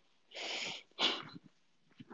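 A person breathing out hard twice while lowering herself onto her back on a yoga mat: a half-second breathy exhale, then a shorter, sharper one about a second in.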